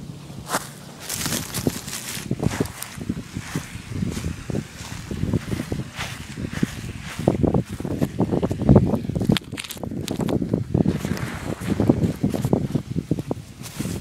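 Handling noise from a phone camera lying on the ground as it is picked at and repositioned: irregular rustling, scraping and knocks against the microphone, the loudest bump about nine seconds in.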